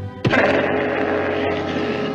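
Cartoon lion roaring: a loud, rough roar that starts suddenly about a quarter of a second in and holds, over orchestral scoring.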